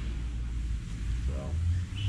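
A steady low hum with a short voice sound about a second and a half in.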